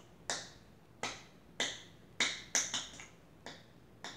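Light hand claps, about seven short sharp claps at an uneven pace.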